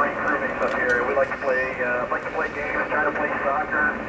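A voice speaking over an amateur radio downlink from the International Space Station, played through the station's loudspeaker, with the thin, narrow sound of two-way radio audio.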